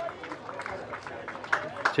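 Quiet open-air ambience at a sports ground, with faint background voices. A man's voice starts up near the end.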